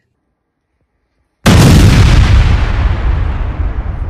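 Dead silence for about a second and a half, then a sudden, very loud explosion boom whose deep rumble slowly dies away.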